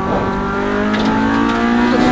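Honda Civic rally car engine heard from inside the cabin, revving up steadily under hard acceleration, its pitch rising throughout.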